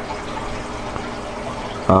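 Steady, even background hiss with a faint hum underneath, no distinct knocks or clicks.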